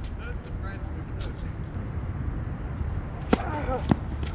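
Tennis ball hit hard by racket strings: two sharp pops about half a second apart near the end, over a steady low rumble and faint voices.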